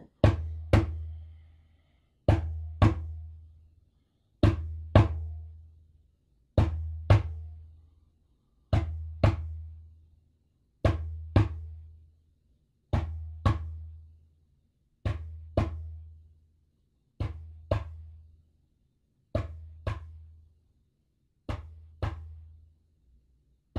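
Small djembe played by hand in a slow heartbeat rhythm: pairs of strokes about half a second apart, a pair roughly every two seconds, each stroke with a deep ringing boom. The strokes grow gradually softer toward the end.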